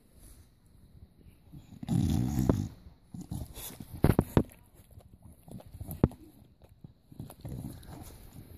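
Bulldog puppy growling and grunting, loudest in a burst about two seconds in, with softer grunts near the end. A few sharp knocks come around the middle.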